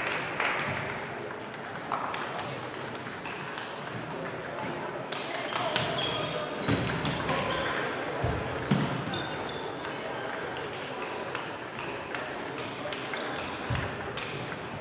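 Table tennis balls clicking off bats and tables at several tables at once, the hits overlapping irregularly, with voices of players and onlookers echoing in a large sports hall.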